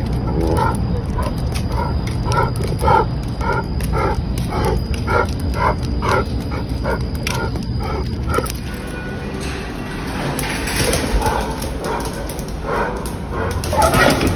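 Husky–Labrador mix barking over and over, about two barks a second for roughly eight seconds: the dog's reactive, aggressive barking at other dogs while on the leash.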